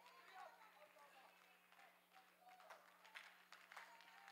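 Near silence: faint, distant voices, a steady low hum, and a few faint taps in the second half.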